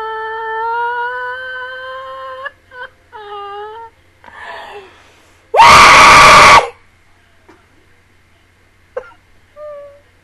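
A woman's voice whimpering in a long, slightly rising whine, then shorter whines. About five and a half seconds in comes a loud, distorted vocal outburst lasting about a second, followed by faint whimpers.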